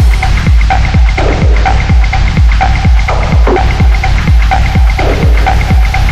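Electronic dance music: a steady four-on-the-floor kick drum, about two beats a second, each kick dropping in pitch, over a deep bass with a short repeating synth blip. The bright hi-hats drop out right at the start, leaving the kick and bass bare.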